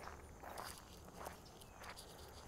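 Faint footsteps of a person walking, three soft steps about two-thirds of a second apart.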